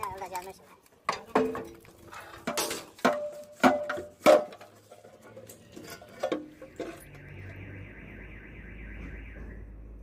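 Steel column formwork panels and edge strips clanking and ringing as they are handled and pried off a cast concrete column, a run of sharp metal strikes with the loudest about four seconds in. After about seven seconds a steady, fast-pulsing high tone follows for a couple of seconds.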